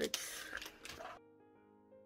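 Rustling and clicking of plastic photocard sleeves being handled, cut off suddenly just over a second in. Soft piano background music follows.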